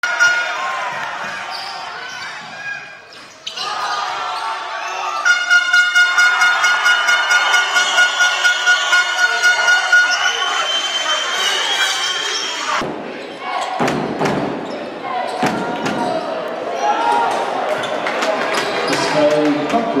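Basketball game sound in an indoor arena: the ball bouncing on the court amid voices and hall noise. From about five to ten seconds in, a rhythmic pulsing with steady tones runs at about three beats a second, and the sound changes abruptly near thirteen seconds.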